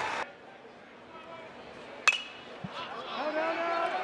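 A single sharp metallic ping about halfway through: a metal baseball bat hitting a pitched ball, sending a foul fly ball toward the first-base dugout. Faint crowd voices rise after it.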